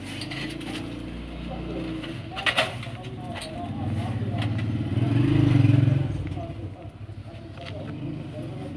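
A motor vehicle's engine passing by, growing louder to a peak about five and a half seconds in and then fading. Light clicks of metal and plastic heater parts being handled come over it.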